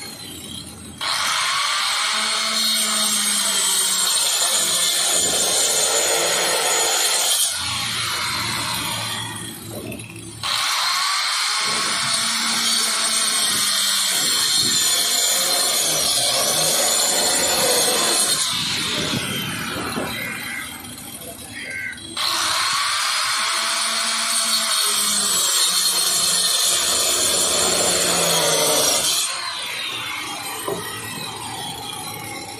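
Handheld electric circular saw cutting through a plastic drum: a high whine with the rasp of the blade chewing plastic, in three long runs of several seconds each, easing off twice in between.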